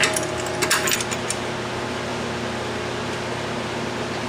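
Steel bolts with washers clicking against a wooden board as they are dropped into its holes: a few light, sharp clicks in the first second or so, then a steady background hum.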